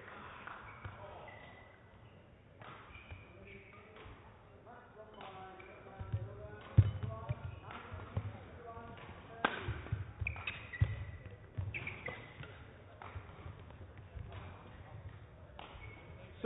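A badminton singles rally: a series of sharp racket hits on the shuttlecock and thuds of players' footwork on the court, coming thicker from about midway, with faint voices in the background.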